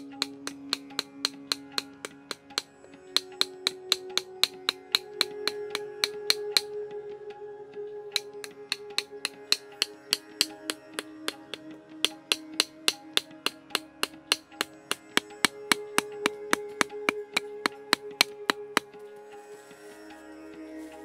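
Instrumental background music with long held notes, over a fast, even run of sharp wooden knocks, about three or four a second, with two short pauses. The knocks fit a wooden stick driving thin wooden stakes into the ground.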